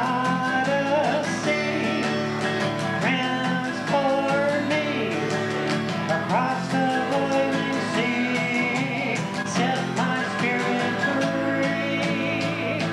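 Acoustic guitar strummed under a harmonica played in a neck rack, carrying the melody in an instrumental break of a folk song, with held and bending notes.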